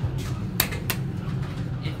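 Steady low buzz of a 2003 ThyssenKrupp hydraulic elevator, heard inside the car, with two sharp clicks a little after half a second and again just before a second in.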